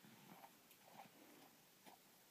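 Near silence, with a few faint, short rustles and small sounds from a baby moving under a blanket.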